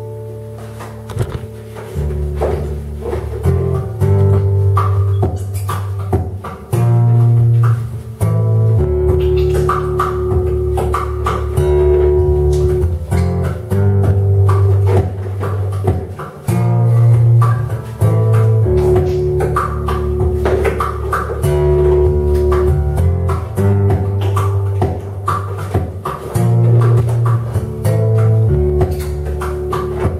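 Acoustic guitar playing an instrumental passage of a Celtic-style piece: plucked notes over deep bass notes that change every second or two.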